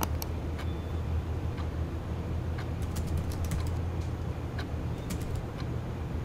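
Computer keyboard keys clicking as a short reply is typed: scattered single keystrokes with a quick burst of several a little past the middle, over a steady low hum.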